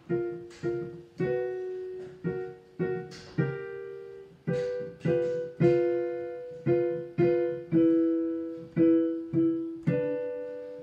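Digital piano played one note at a time in a slow arpeggio exercise, about two notes a second, each note ringing and fading before the next.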